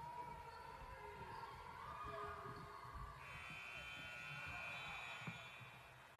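Gymnasium scoreboard buzzer sounding a steady electronic tone about three seconds in and holding for about two seconds as the game clock hits zero, marking the end of a period. Before it, faint gym noise from the court.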